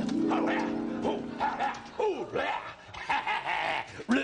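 Music with steady held chords fades out in the first second or so. From about two seconds in, a gruff, dog-like voice makes falling, barking and grumbling noises: the performer voicing the big white dog puppet.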